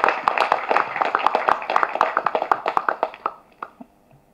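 Applause: many hand claps together that thin out and die away a little past three seconds in.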